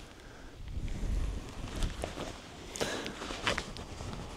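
Rustling and scuffing of clothing and gear close to a chest-worn microphone as the wearer shifts about, with several short scratchy noises in the second half.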